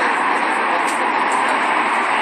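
Loud, steady rushing noise with no distinct events in it.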